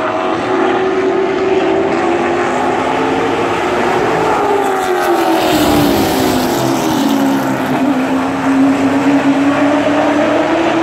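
Several stock race cars' engines running at speed on a short oval. The pitch rises and falls as the pack comes past about halfway through, then settles lower and steady as the cars go away into the turn.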